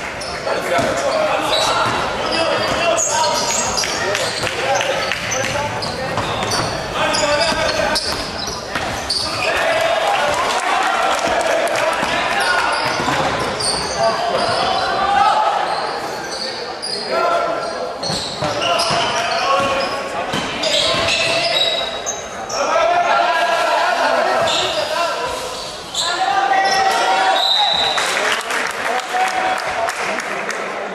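Basketball being dribbled on a wooden court in a large indoor sports hall, mixed with players' and spectators' voices calling out throughout.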